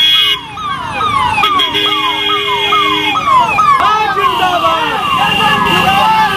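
A vehicle siren on the convoy cars, sounding a rapid falling wail that repeats about two and a half times a second, with a car horn held for about a second and a half near the middle. Crowd voices can be heard behind it.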